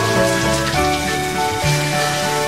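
Water spraying from a hose onto a bull's wet hide and splashing on the floor, with background music carrying low bass notes.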